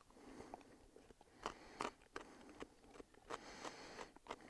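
Faint chewing of a raw oerprei (bulbous perennial leek) bulb: a few soft, irregular crunches and mouth clicks.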